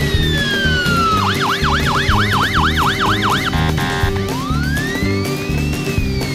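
Police car siren sound effect. It starts as a slowly falling wail, switches about a second in to a fast yelp of roughly four sweeps a second, buzzes briefly, then rises and falls in a slow wail again, over background music with a steady beat.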